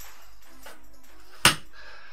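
A single sharp knock about one and a half seconds in, over quiet room tone.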